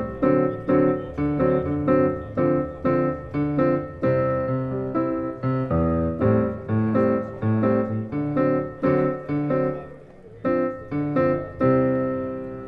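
Acoustic piano patch played from an electric guitar through the Fishman TriplePlay MIDI pickup, heard over studio monitor speakers. Struck chords come about two to three a second, each fading, with a brief lull near the end.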